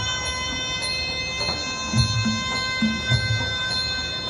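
Traditional Thai wai kru music (sarama) accompanying a Muay Thai ram muay: a held high pipe note over irregular low drum beats and light, regular cymbal ticks.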